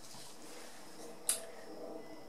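Quiet room tone with one short, sharp click a little past halfway through.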